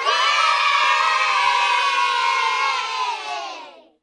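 A group of children cheering and shouting together in one long held cheer that starts abruptly, sags slightly in pitch and fades out near the end.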